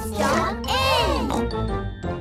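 Bright children's cartoon jingle music with tinkling, and a high voice-like sound gliding up and down in pitch over a steady bass.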